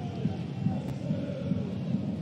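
Football stadium crowd in the stands, a steady din of many voices from the supporters.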